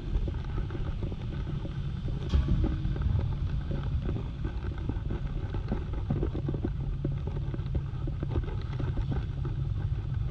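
Steady low rumble of city street ambience with a faint machine hum and scattered light knocks, and a brief sharp click a little over two seconds in.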